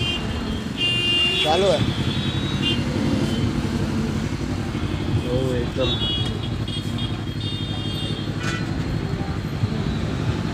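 Motorcycle engine idling steadily, a low even rumble, with short high tones coming and going over it.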